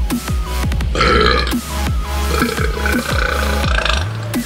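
A man burping: a short rough burp about a second in, then a long drawn-out burp that runs until near the end.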